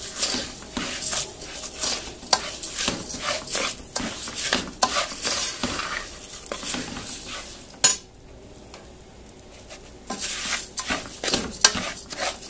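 Raw rice frying in a large aluminium pot, sizzling, while a spoon stirs it in repeated scraping strokes against the pot. The stirring pauses for about two seconds after a sharp click around eight seconds in, then resumes. This is the rice being toasted in the fat before water is added.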